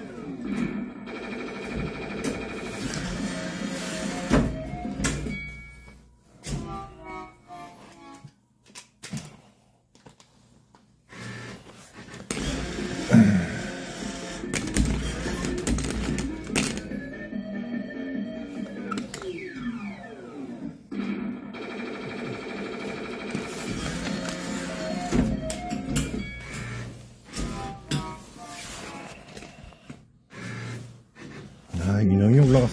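Crane game machine playing its looping electronic music and sound effects, with falling sweep jingles, as the claw runs through a grab. A few knocks of the claw mechanism are heard, the loudest about halfway through.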